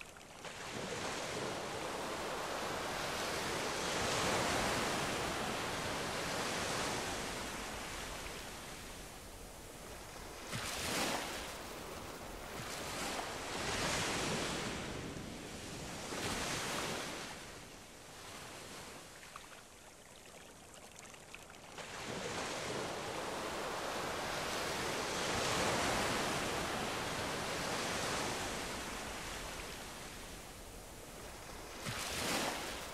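Sea surf: waves breaking and washing in, swelling and fading in long, slow surges, with several shorter surges in the middle.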